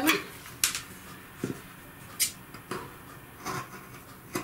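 A handful of short light clicks and taps, spread out about a second apart, from scissors and fabric being handled on a wooden tabletop just before cutting.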